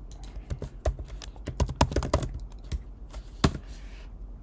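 Computer keyboard keys clicking as a word is typed in quick runs, with one louder keystroke near the end: the Enter key sending the search.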